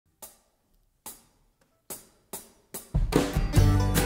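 A drummer's count-in: two slow, sharp taps, then three quicker ones. About three seconds in, the full country band comes in together: acoustic guitar, mandolin, bass and drums.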